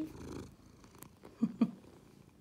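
Domestic cat purring close to the microphone, with two short low voice-like sounds about one and a half seconds in.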